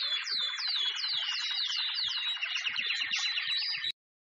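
Birds chirping: high, repeated downward-sweeping chirps about three a second over a bed of faster chirping, cut off suddenly just before the end.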